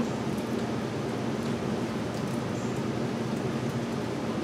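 Steady background noise: an even hiss with a faint low hum under it, and no distinct sound standing out.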